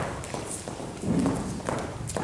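Two dancers' shoes stepping on a hard studio floor during Lindy Hop partner footwork: a quick, uneven run of light steps and taps.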